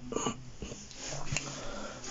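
A person breathing close to a phone microphone, a soft noisy breath swelling through the middle, with one faint click about halfway through.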